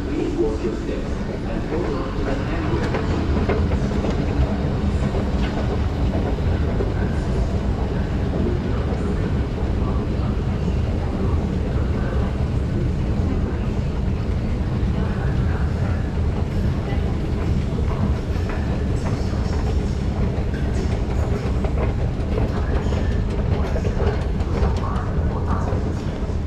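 Steady low rumble of an underground MRT station, with faint voices now and then.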